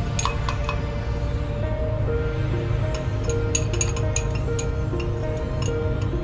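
Background music with a metal spatula clinking against a glass beaker as solid is scraped out: a cluster of sharp clinks just after the start and another about three to four and a half seconds in.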